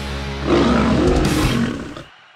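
Heavy rock intro music for a logo sting, with a roar-like sound effect layered over it from about half a second in; both fade out at the end.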